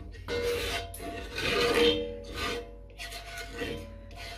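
A slotted spoon scraping through broth against the bottom of a cast-iron casserole pot, fishing out small bits, in about five uneven rasping strokes.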